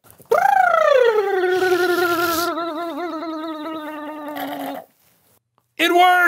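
A long, voice-like tone that rises briefly and then slides down, settling lower and wavering in pitch for about four seconds. A short warbling burst follows near the end.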